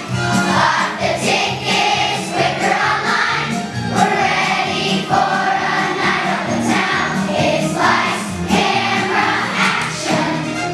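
A children's choir of fourth graders singing together in unison over an instrumental accompaniment, continuous and steady.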